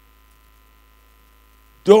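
Faint steady electrical mains hum, with a low drone and a few thin steady tones. A man's voice starts just before the end.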